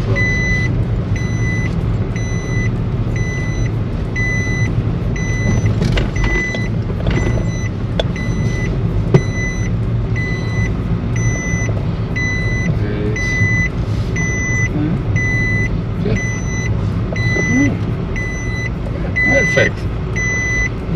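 A car's engine and road rumble heard from inside the cabin, with an electronic reversing beeper sounding short beeps at an even pace of about two a second. A single sharp click comes about nine seconds in.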